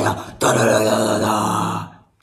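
A woman's voice in a low, rough growl: a short one, then a longer one of about a second and a half that fades out.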